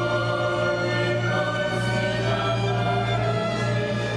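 Polish folk song-and-dance ensemble's choir and orchestra performing, with sustained held chords.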